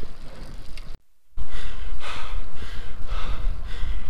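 A cyclist's hard, quick panting, about two breaths a second, from the effort of a steep 20% climb, over a low rumble of wind on the microphone. The sound drops out briefly about a second in.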